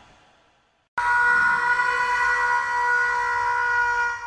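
The tail of a loud hit fades out, then about a second in a sudden loud, steady blare of several held pitches at once starts and keeps going.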